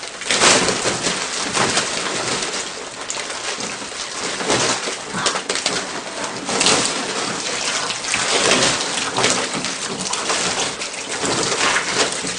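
Thick liquid slime (gunge) pouring from above onto a seated person and splattering onto her and the floor, a continuous wet splashing that rises and falls without a break.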